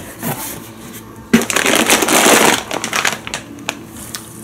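Large plastic bag of chicken meatballs crinkling and rustling as it is lifted out of a cardboard box, a loud burst of about a second and a half starting partway in, followed by a few light knocks.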